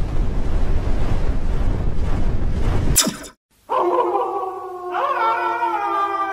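Intro sound effects: a loud, deep rumbling whoosh for about three seconds, ending in a brief crack. After a short silence comes a long, drawn-out wolf howl, with a second howl rising in about a second later.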